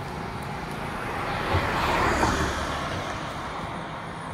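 A road vehicle passing by. Its engine and tyre noise swells to a peak about two seconds in, then fades away.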